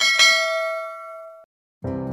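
A bright bell-like ding sound effect, struck twice in quick succession, rings out and fades over about a second and a half, then cuts off. Near the end, strummed acoustic guitar music starts.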